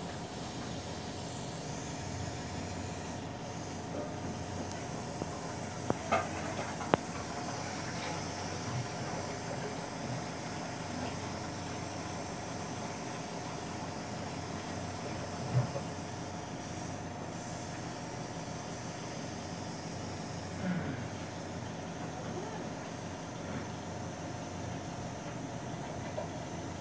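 Steady machine hum and hiss from medical equipment running, with a few short clicks and knocks scattered through it.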